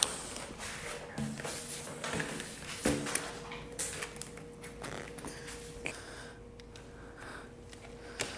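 Light clicks and taps of a long plastic tube guard and its end caps being fitted and handled, with a short low grunt-like sound about three seconds in and a faint steady hum from then on.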